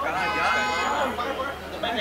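Several people's voices chattering at once, with one voice calling out loudly in the first second.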